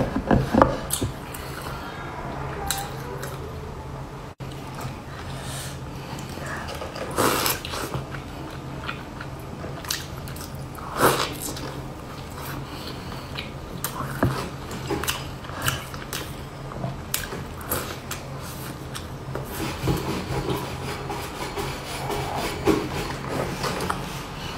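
Close-up biting and chewing of soft walnut-topped cake dipped in milk: scattered small clicks and wet mouth sounds, with a few louder bites, over a steady low hum.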